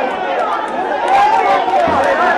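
A crowd of men shouting and clamouring at once, many voices overlapping with no single speaker standing out.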